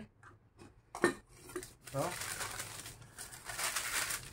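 Sheet of baking paper rustling and crinkling as it is lifted from the table, starting about two seconds in. A sharp tap comes about a second in.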